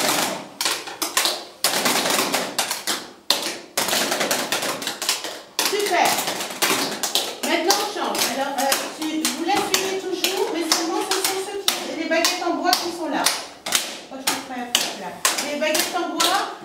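Wooden drumsticks tapping in a fast, uneven run of sharp strikes on the tablets of folding chairs, played by a group together. Voices join over the taps from about six seconds in.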